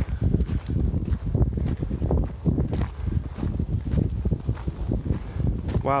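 Wind buffeting the microphone in a low, uneven rumble, with footsteps on a gravel trail.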